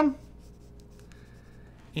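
Faint pencil strokes scratching on sketchbook paper as the last short lines of a drawing are put in.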